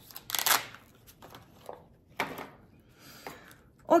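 A tattoo needle-cleaning foam sponge's packet being torn and rustled open by hand, in a few short crackling bursts, the loudest about half a second in.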